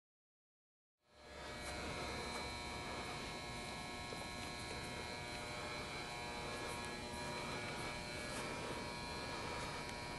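Silent for about the first second, then a steady hum with several fixed tones: the machinery and lighting hum of a large indoor turf dome.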